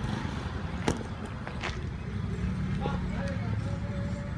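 Street ambience: a steady low rumble of vehicle engines, with a sharp knock about a second in and faint distant voices in the second half.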